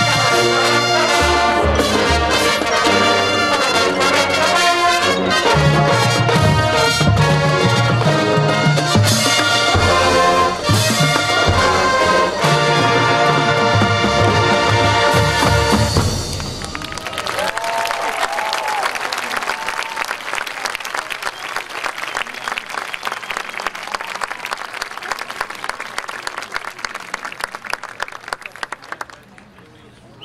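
Marching band brass and percussion playing loud full-ensemble music that cuts off about halfway through, followed by crowd applause and cheering that fades out near the end.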